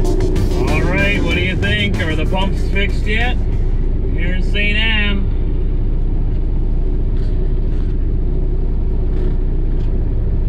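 Pickup truck engine running with a steady low drone, heard from inside the cab as the truck creeps up to the fuel pumps. Over it in the first half, a wavering voice comes and goes.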